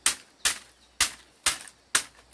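Machete striking the bamboo strips at the edge of a woven bamboo mat: five sharp, crisp chops, about two a second.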